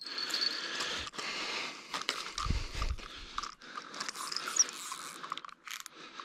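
Spinning reel being wound in, a continuous mechanical whirr with small clicks, as a hooked fish is reeled toward the bank. About two and a half seconds in there is a short low thump from handling.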